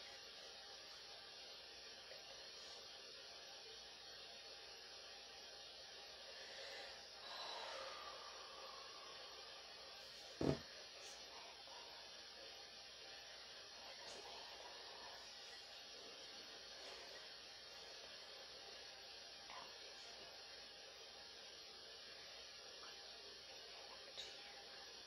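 Near silence: a steady faint hiss of room tone, broken once about halfway through by a single short, sharp knock.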